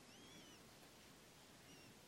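Near silence, broken by a faint bird call: two arching chirps close together in the first half-second and one short chirp near the end.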